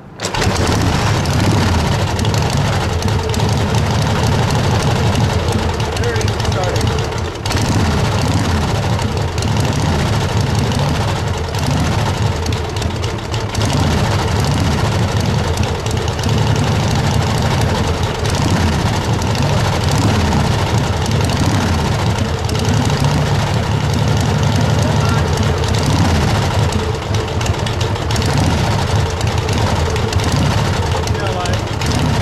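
1945 Harley-Davidson Knucklehead's overhead-valve V-twin kick-started cold with the choke on: it catches at once and then runs steadily at idle, with a brief dip about seven seconds in.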